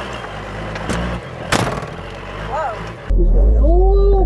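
Four-wheel drive's engine running low and steady off-road, with a single sharp knock about a second and a half in. About three seconds in, loud music with heavy bass cuts in abruptly and covers it.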